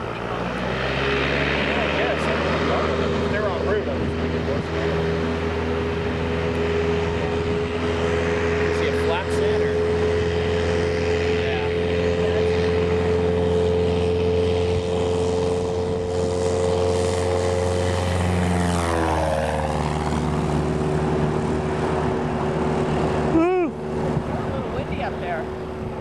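A single-engine Cessna's propeller engine runs at a steady high power setting as the plane rolls down the runway. About nineteen seconds in, the pitch drops as the plane passes by. The sound breaks off briefly a few seconds before the end.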